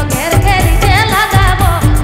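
A song performed through a stage sound system: a singer's voice with a wavering vibrato carried over keyboards and a steady low drum beat.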